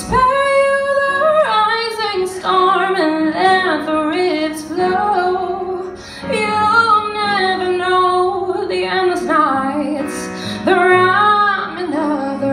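Woman singing live into a microphone, drawing out long held notes that bend and waver, with a brief breath about six seconds in.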